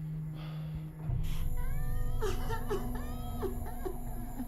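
Film soundtrack: a steady low drone, then from about a second in a series of short, high whimpering, sobbing cries that bend and fall in pitch, the crying of the SCP-096 creature.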